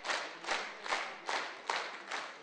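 Concert audience clapping in unison, a steady rhythm of about two and a half claps a second.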